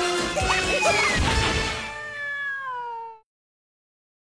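Upbeat cartoon theme music ending on a long, slowly falling cat meow. Everything cuts off a little after three seconds into dead silence.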